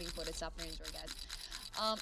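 A woman's voice talking quietly over a live casino game stream, with a fast run of faint clicks underneath. A man says a brief "um" near the end.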